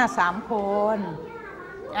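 Speech only: a voice says a short phrase in Thai in the first second, followed by a brief lull.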